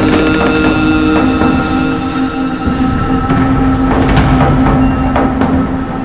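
Background music: a sustained, droning chord held steady over a low rumble.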